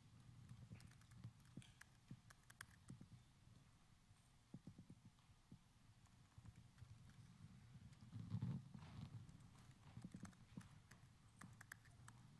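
Faint clicks and taps of a laptop keyboard being typed on in short, irregular runs, with a soft low thump about eight seconds in, over quiet room tone.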